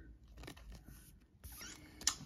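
Faint rustling and a few light clicks of a trading card being slid into a thin plastic card sleeve.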